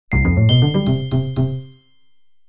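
A short comic sound-effect jingle: about five bright bell-like dings ringing over a quick run of lower musical notes, lasting under two seconds and then fading out.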